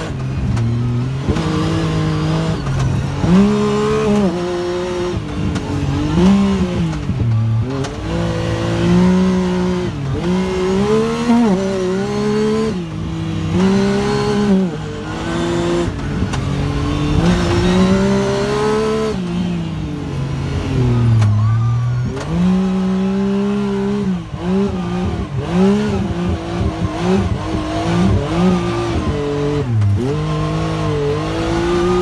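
Side-by-side UTV engine heard from inside the cab, its pitch rising and falling again and again every few seconds as the throttle is opened and eased off.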